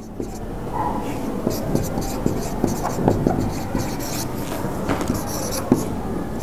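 Writing on a board: a run of irregular short scratching and tapping strokes.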